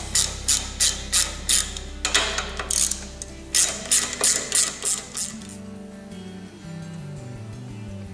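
Ratchet wrench clicking in quick repeated strokes as the cap nuts on an outboard lower unit's water pump cover are backed off, stopping about five seconds in. Background music plays throughout.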